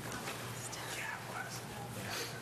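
Faint, indistinct murmur of people talking quietly in a meeting room, over a steady low hum.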